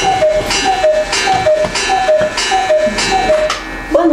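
A repeating two-note tone, a higher note dropping to a lower one about twice a second, with a click on each repeat; it stops near the end.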